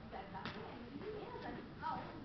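Indistinct talk of several people in the background, with a single sharp click about half a second in.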